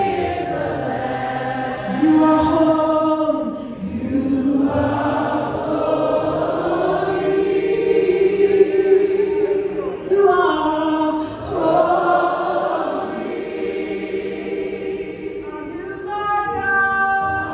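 Gospel worship singing: a female lead with a choir of backing voices, holding long notes that swell and ease, with brief breaks about 4 and 10 seconds in.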